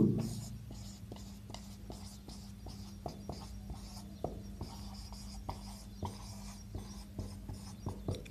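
Marker pen writing on a whiteboard: many small, faint strokes and taps of the felt tip as letters are formed, over a steady low hum.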